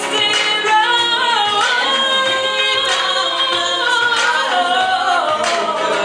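A woman singing live through a microphone in an R&B pop duet, holding long notes that slide and waver in pitch.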